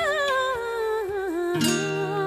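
Slow ballad music: a held, wordless sung note with vibrato slides slowly down in pitch over soft sustained accompaniment, and a new note begins about one and a half seconds in.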